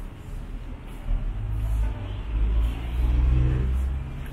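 A motor vehicle engine running as a low, uneven rumble, its pitch rising as it revs about three seconds in.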